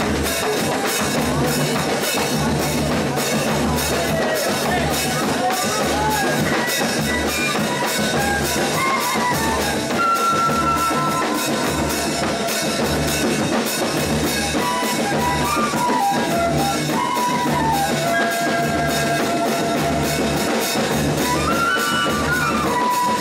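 A pífano band playing live: several cane fifes play the melody together over a steady beat from the bass drum and snare of the band's percussion section.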